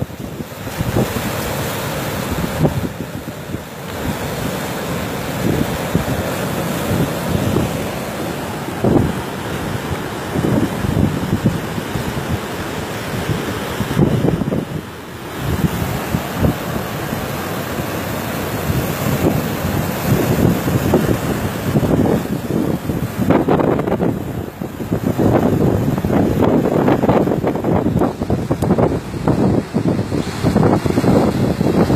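Rough sea surf rushing and breaking, with strong wind buffeting the microphone in gusts that grow heavier near the end.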